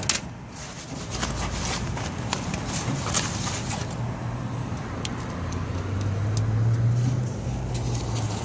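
A low, steady rumble that swells about five seconds in, with a few light clicks and scrapes near the start as a CD case is pushed into an automated library return slot.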